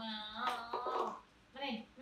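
A voice making short, pitched, speech-like sounds: a longer one in the first second and a brief one near the end.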